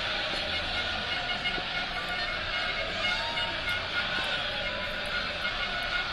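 Steady outdoor background noise with faint music.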